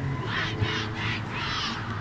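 A crow cawing three times in quick succession, harsh calls each about half a second long.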